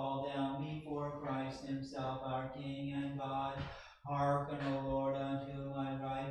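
A single man's voice chanting liturgical text on one steady reciting note, as an Orthodox reader intones the service, pausing briefly for a breath about four seconds in.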